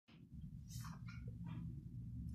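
Faint room tone in a small room: a steady low hum, with a few brief soft hissy noises in the first second and a half.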